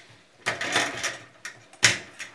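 Wire cutters snipping the lampholder wires on a sheet-metal fluorescent light fixture: a short scraping rustle of wire and metal about half a second in, then one sharp snip near the end.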